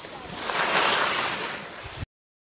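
Skis scraping over groomed snow: a hissing rush that swells about half a second in and eases off again.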